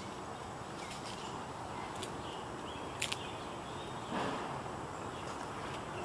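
Steady low outdoor background noise, with two sharp clicks about two and three seconds in and a short rustle about four seconds in.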